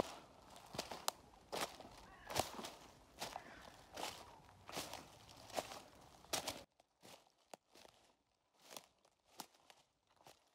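Footsteps at a slow walking pace, roughly one step every 0.8 seconds, over a low hiss. About two-thirds in the hiss drops out suddenly and fainter, sharper clicks continue.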